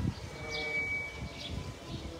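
Small birds chirping in the trees, short falling calls repeated about twice a second, over an irregular low rumble.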